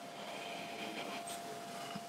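Quiet room tone with a faint, drawn-out nasal inhale as a glass of ale is smelled, under a thin steady faint whine.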